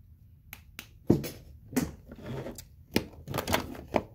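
Handling noise: a run of about eight sharp clicks and knocks at uneven intervals, with a short rustle in the middle, as small objects and the recording device are handled close to the microphone.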